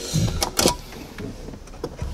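Wire and plastic trim being handled at a car's windshield pillar: two short scraping knocks about half a second in, and a light click near the end, as the wire is pushed along toward the headliner.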